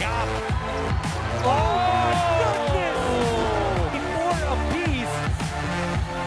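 Background electronic music with a steady beat. In the middle a long drawn-out vocal line slowly falls in pitch over it.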